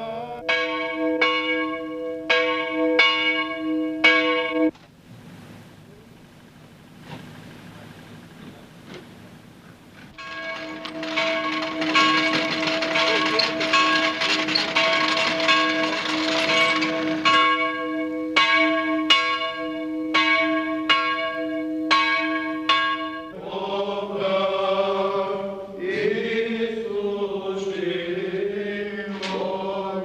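Church bell tolling in runs of strikes, about two a second, with a stretch of denser ringing over a rushing noise in the middle. Near the end, male voices take up an Orthodox chant.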